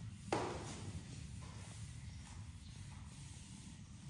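Broom bristles brushing against a ceiling, sweeping off cobwebs: one sharp brush stroke about a third of a second in, then faint scratching.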